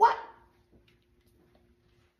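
A man's short, loud bark-like shout about a second after he stops talking. The shout slides up in pitch and dies away within half a second, leaving a faint steady hum.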